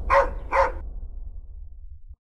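A dog barking twice, two short barks about half a second apart, over a steady low rumble.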